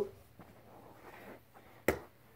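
Faint rustling of movement, then a single short, sharp knock near the end.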